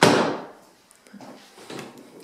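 An interior door shutting with a single sudden thud right at the start, fading out within about half a second, followed by faint scattered handling noises.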